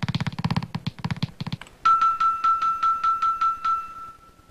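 Game-show sound effect for a new number board appearing: a fast, even run of beats that stops about a second and a half in, then a quick string of bright chiming pings over one held high tone.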